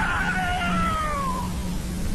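One long, high wailing cry that rises in pitch, then glides slowly down and fades about a second and a half in, over a steady low hum.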